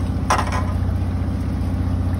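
A boat's engine idling: a steady, low, even hum. A brief short noise comes about a third of a second in.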